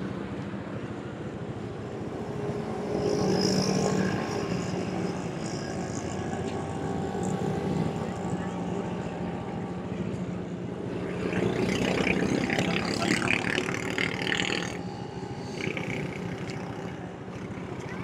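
City road traffic: a steady hum of passing motorcycles, motor rickshaws and vans, with one vehicle passing louder a few seconds in. Voices of passersby are mixed in from about eleven to fifteen seconds in.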